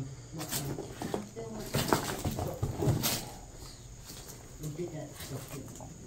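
Footsteps crunching and knocking over plaster and wood debris on a littered floor: a run of irregular clicks and knocks in the first half, with faint low voices.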